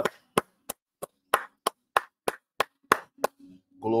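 One person clapping hands in a steady rhythm, about three sharp claps a second.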